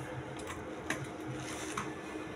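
Faint rustles and a few light clicks from the thin pages of a Bible being handled, over a low steady background hum.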